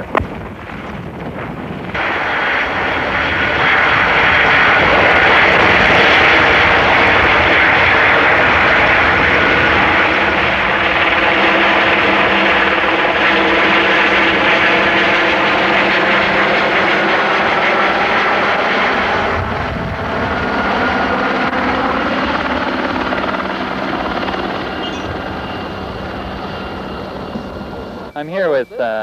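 Helicopter hovering close overhead, a steady loud rotor and engine noise that swells about two seconds in, dips briefly past the middle and slowly fades in the last several seconds.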